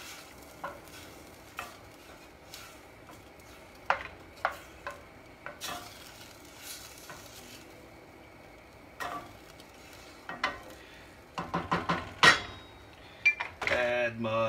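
Wooden spoon stirring a watery tomato sauce in a stainless steel saucepan, with scattered knocks of the spoon against the pan over a faint hiss. Near the end comes a quicker run of louder knocks and clinks.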